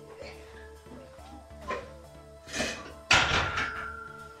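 A loaded Olympic barbell put down on the floor about three seconds in: one loud metallic clang, with the steel bar ringing on afterwards. Background music plays throughout.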